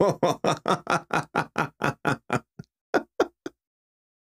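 A man laughing hard in a long run of quick, even 'ha' pulses, about six a second, which slow, thin out and stop about three and a half seconds in.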